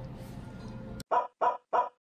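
Soft background music fading out. Then a click and three identical short animal-like calls in quick succession, about a third of a second apart: an edited-in sound effect.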